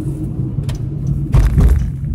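Car cabin noise while driving: a steady low road-and-engine rumble, with a louder low surge about one and a half seconds in.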